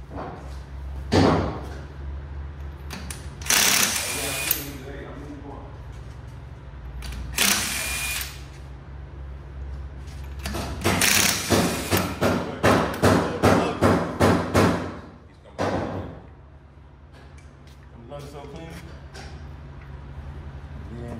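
Cordless impact wrench taking lug nuts off a car wheel: several bursts of hammering, then a quick run of about ten short trigger blips in the middle, over a steady low hum.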